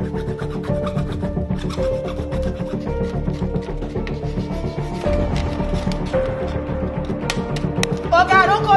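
A hand saw rasping back and forth through a smartphone's casing on a stone countertop, in quick repeated strokes, with background music playing.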